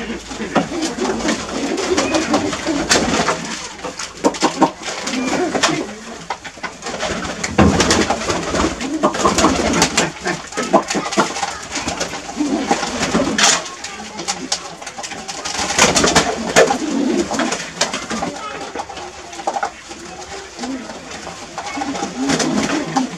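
A flock of domestic pigeons cooing in a small loft, the low calls going on all through, with frequent short clicks and flutters from the birds moving about.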